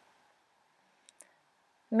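Near silence with two faint, short clicks close together about a second in.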